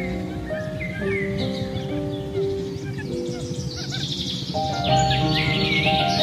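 Relaxing background music of slow, sustained notes with recorded birdsong mixed in: scattered short chirps throughout, thickening into a busier run of chirping near the end.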